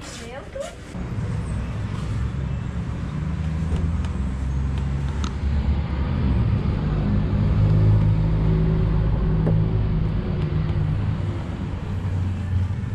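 A motor vehicle's engine running close by, a low steady rumble that grows louder until near the end and then eases a little.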